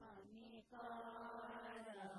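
Devotional chanting of a Hindu bhajan, sung on held notes, with a short break about two-thirds of a second in and then one long sustained note.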